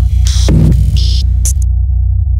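Logo-intro sound design: a loud, deep, throbbing electronic bass drone, with short bursts of glitchy static crackling over it a few times.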